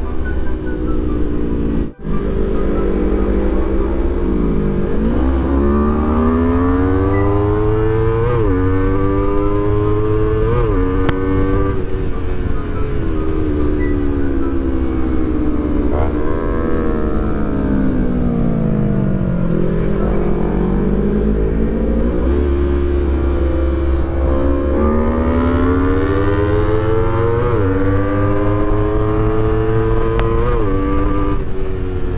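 A 250 cc sport motorcycle's engine pulling through the gears: its pitch climbs, drops sharply at each upshift and climbs again, with two long falls as the bike slows and then picks up speed again. Heard from the rider's seat, with a steady low rumble underneath.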